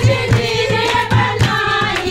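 Group of women singing a Hindu devotional bhajan together, with hand-clapping and a dholak drum keeping a steady beat of about two to three strokes a second.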